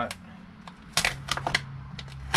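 A few sharp clicks and knocks, a cluster about a second in and one more near the end, as the Jeep 3.7L aluminum cylinder head is handled on the workbench. A low steady hum runs underneath from about a second in.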